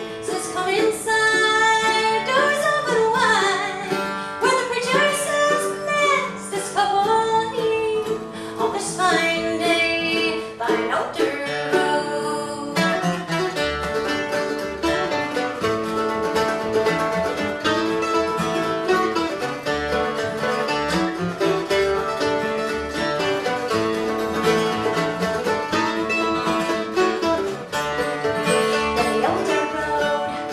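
Live bluegrass band: a woman singing over acoustic guitar, mandolin and upright bass, then, about twelve seconds in, an instrumental break on the strings alone.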